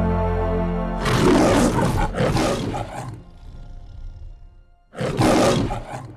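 The lion roar of the Metro-Goldwyn-Mayer logo. A held orchestral chord gives way, about a second in, to two long roars in quick succession, and a third roar comes near the end.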